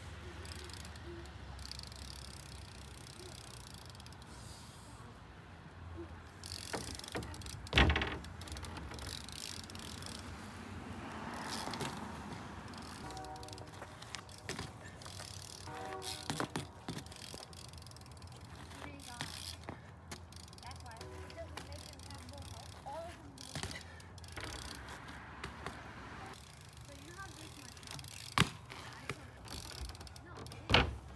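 BMX bike rolling and pivoting on asphalt: tyre noise and rattling from the bike, with a sharp, loud thump about eight seconds in and a smaller one near the end as a wheel comes down.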